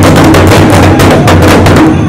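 Pow wow big drum struck together by several drummers' sticks in fast, even beats, about six a second, a deep booming drum. It is a drum group's quick burst of beats in answer to its name in the announcer's roll call.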